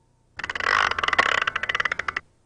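A wind-up music box being wound: a rapid, even run of ratchet clicks from the spring winder, starting about a third of a second in.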